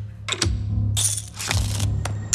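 Film trailer soundtrack: a low, steady musical drone under sharp clicks and short clattering bursts, the longest running from about a second in to near the end.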